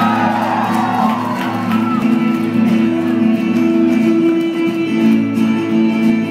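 Solo acoustic guitar played live on stage, a steady pattern of ringing notes at the opening of a song, heard from out in the audience.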